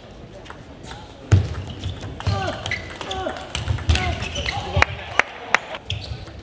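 Table tennis rally: the plastic ball clicking sharply off rackets and the table, several times in quick pairs, with thuds and squeaks of the players' footwork on the court floor.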